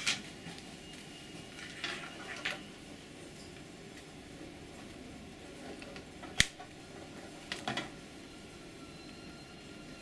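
Handling noise as a slim slot-load DVD drive is fitted into a silver metal enclosure: a few light clicks and taps, the sharpest about six seconds in, over a steady low background hiss.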